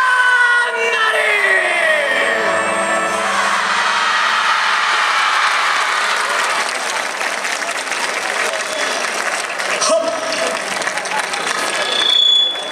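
The dance team's performance music ends with sliding, falling tones in the first few seconds. A large outdoor audience then applauds and cheers steadily.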